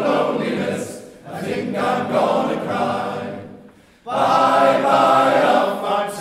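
Men's choir singing held chords with string accompaniment. The sound dips briefly about a second in, fades almost to silence just before four seconds, then the choir comes back in loudly with a new phrase.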